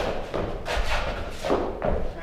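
Several line dancers' footsteps and stomps on the hall floor as they dance the steps together, with heavy thuds at uneven intervals, roughly one every half second to second.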